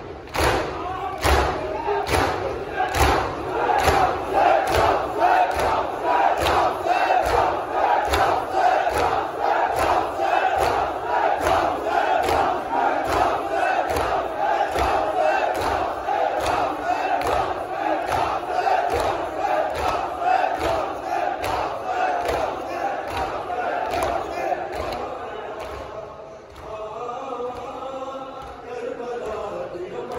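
A large crowd of men doing matam, striking their chests with their hands in unison about twice a second while chanting together. A few seconds before the end the chest-beating stops and the voices carry on as a drawn-out sung chant.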